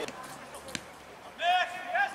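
A single sharp thud of a football being kicked, about three quarters of a second in, over quiet pitch-side ambience; near the end, a short high shout from the pitch.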